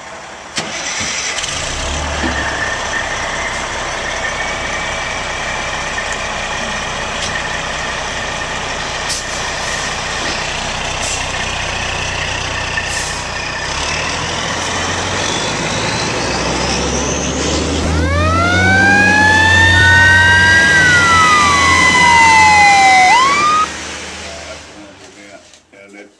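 A fire engine's diesel engine running as the rig pulls out, with a whine rising in pitch in the middle. About three-quarters of the way in its siren winds up, several rising tones levelling off with a falling wail across them, the loudest part. The sound cuts off suddenly just before the end.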